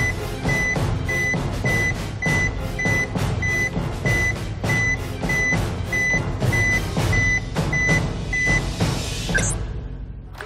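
Dramatic suspense music with heavy regular hits and a high electronic beep repeating about every half second as the scale's display rolls. The beeping stops shortly before the end, followed by a brief rising swoosh.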